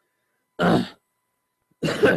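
A man clearing his throat twice, two short rough bursts a little over a second apart.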